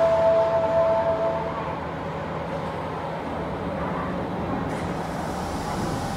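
Osaka Metro 80 series subway train standing at an underground platform, with a steady hum. Two steady tones sound over it and fade out about a second and a half in.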